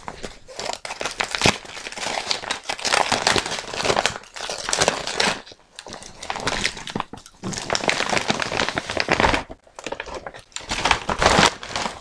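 Shiny gift wrap crinkling and rustling as a parcel is unwrapped by hand, in irregular bursts with a couple of short pauses.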